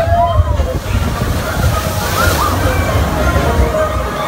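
Log flume water sloshing and rushing around a ride boat over a steady low rumble, with a louder rush of water about halfway through; the low rumble falls away right at the end.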